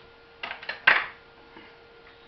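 Kitchenware being handled on a countertop: a few light clicks, then one sharp, loud clatter with a brief ring after it.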